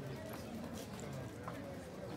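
Background voices of people talking, with a few light taps scattered through.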